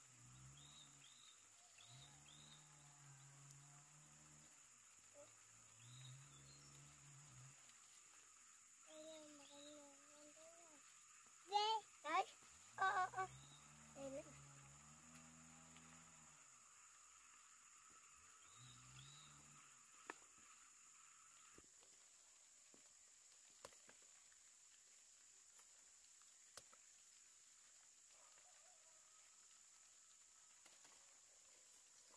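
Quiet talk on and off, with a louder, high-pitched voice calling out briefly about twelve seconds in, over a steady high-pitched insect drone. A few faint clicks follow in the quieter second half.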